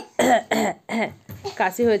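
A person coughing three times in quick succession, then a few brief spoken words.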